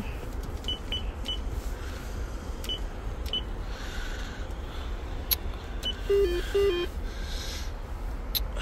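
Dom.ru entrance intercom panel giving a short high beep for each key pressed on its keypad, six presses spaced unevenly over the first six seconds. Just after the last press it plays a short low two-note warble, the panel's signal that the entered code was refused.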